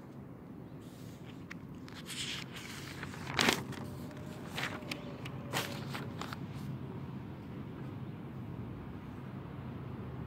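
Rustles and clicks of a paper notebook being handled, its pages turned, the loudest about three and a half seconds in. Under them runs a steady low drone of aircraft overhead.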